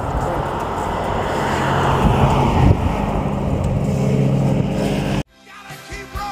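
Cruiser motorcycle engine running at idle, with a brief swell about two and a half seconds in. The sound cuts off suddenly about five seconds in.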